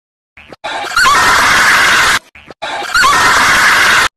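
A loud, heavily distorted squealing noise, the same short clip played twice back to back.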